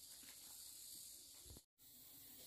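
Near silence: a faint steady high hiss of background noise, with the sound dropping out completely for an instant near the end.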